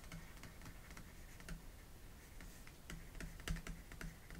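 Faint, irregular clicks and taps of a stylus writing by hand on a tablet.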